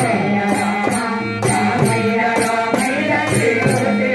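Group of men singing a Rama bhajan namavali, a devotional chant of the names of Rama, in unison through microphones. Small brass hand cymbals keep a steady beat, about three strikes a second.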